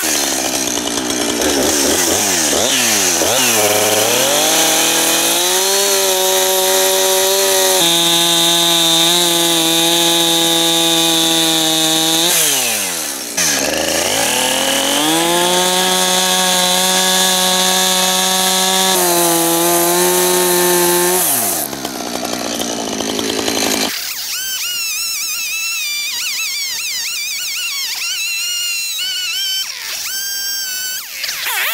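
Two-stroke gas chainsaw revving up and cutting into a wooden slab at a high, steady pitch, dropping back toward idle about 13 seconds in, revving up again, then dropping off once more near 21 seconds. In the last few seconds, music with wavering high tones takes over.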